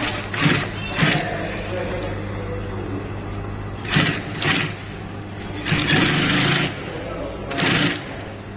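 Industrial edge-binding sewing machine: its motor hums steadily while it stitches in several short bursts, the longest about a second.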